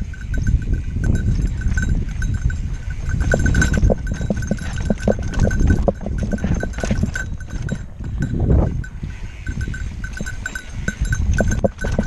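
Mountain bike descending a rocky dirt singletrack: wind rumble on the helmet camera and the rattle of tyres and bike over rocks and ruts, with a high, rapidly pulsing ring running through it.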